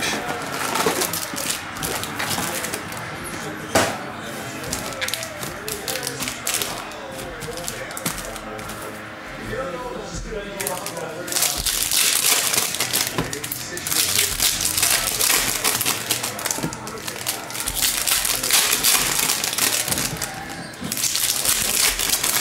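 Foil trading-card pack wrappers from a Bowman Chrome Mega Box being handled and torn open. There is quieter rustling at first, then dense crinkling and tearing of the foil from about halfway on.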